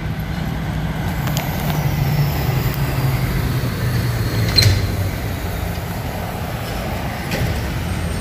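A heavy road vehicle such as a bus or truck going past: a low engine hum that slowly drops in pitch, loudest about halfway through, then eases off.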